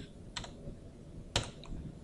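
A few faint computer mouse or desk clicks, one sharper click about a second and a half in, over a low steady room hum.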